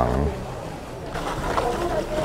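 Cabbage leaves being washed by hand in a metal sink: a steady wet rustle and splashing that grows louder about a second in.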